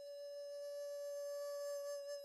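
Soundtrack music: a flute holds one long, steady note after a short melodic phrase.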